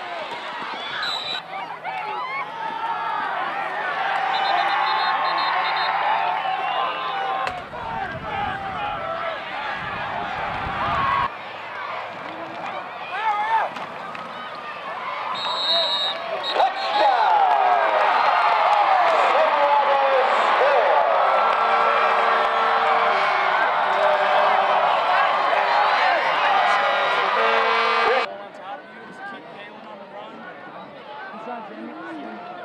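Football crowd in the stands cheering and shouting, many voices at once. It swells louder in the second half and cuts off suddenly near the end. A low rumble comes in about a third of the way through.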